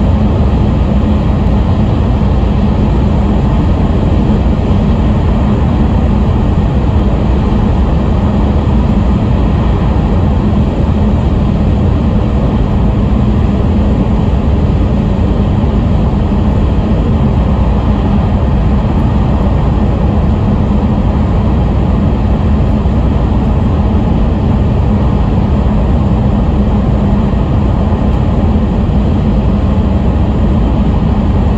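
Cabin noise of an E5 series Shinkansen running through a tunnel: a steady, loud rumble with a constant low hum.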